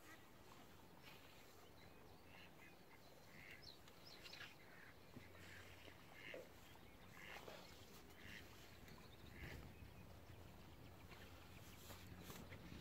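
Near silence: faint, scattered calls of distant ducks over a low steady hum.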